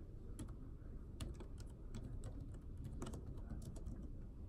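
Typing on an iPad keyboard case: irregular light key clicks, a few a second, over a steady low room rumble.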